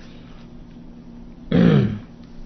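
A man's short vocal sound about a second and a half in: one falling-pitched grunt-like syllable lasting under half a second, after a brief pause with only a faint steady hum.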